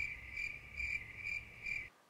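Crickets chirping in an even run of about two chirps a second, used as a sound effect for an awkward silence; it cuts off abruptly just before the end.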